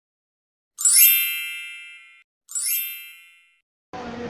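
Two bright electronic chime stings: each opens with a quick upward shimmer and rings out. The second, about halfway through, is shorter and quieter than the first.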